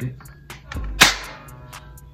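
A single sharp shot from a toy AK-style "Draco" BB gun, fired once about a second in.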